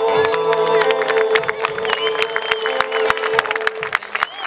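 Live Argentine folk music on acoustic guitar and bombo legüero drum, with a long held note that ends about three and a half seconds in, amid strummed chords and drum strokes. A crowd cheers over the close of the piece.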